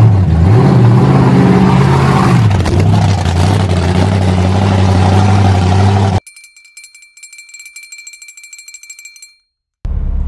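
A monster truck's engine running loud and revving, its pitch rising and falling, until the sound cuts off suddenly about six seconds in. A faint high-pitched electronic whine with a rapid buzzing tick follows for about three seconds, as the camera is run over.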